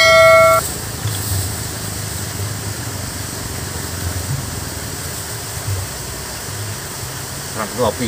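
A short, loud beep of several steady pitches at the very start, cutting off abruptly. After it, steady outdoor background noise with a low hum.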